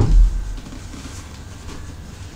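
A dull, low thump right at the start, then a steady low hum.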